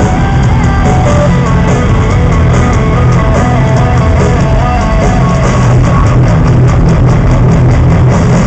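Heavy metal band playing live, heard from the audience: loud distorted electric guitars over bass and drums, with a guitar melody stepping up and down, and no vocals yet.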